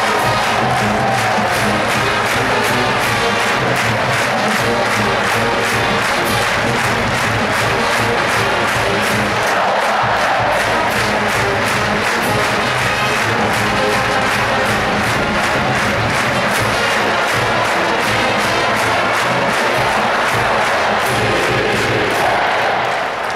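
Marching band playing an up-tempo piece over a steady drum beat of about two to three strokes a second, with a stadium crowd cheering.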